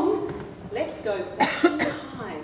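Stage speech, with a cough about one and a half seconds in.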